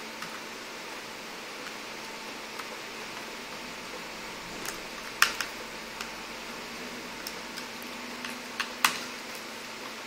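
A screwdriver turning the heat-sink mounting screws on a laptop motherboard: a few small, sharp metal clicks, clearest about five seconds in and again near nine seconds, over a steady low hiss.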